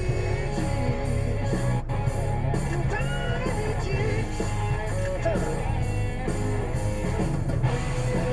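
Rock music with guitar, a song soundtrack played over the footage.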